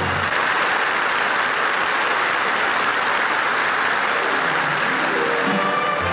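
Studio audience applauding as a held orchestral chord cuts off. About four and a half seconds in, the studio orchestra starts the next number with a stepped rising run.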